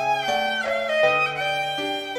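Violin playing a song melody in a cover, moving through several notes, over a backing track with sustained bass notes.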